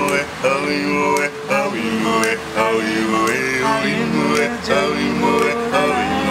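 Male voices singing with music, several pitched parts heard at once, with occasional sharp percussive hits.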